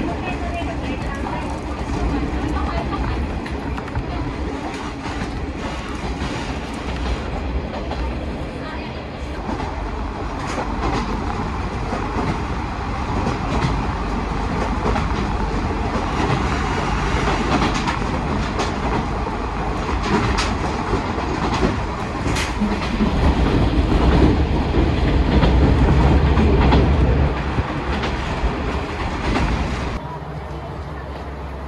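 Train running along the track: a steady low rumble with wheels clicking over rail joints, growing louder near the end.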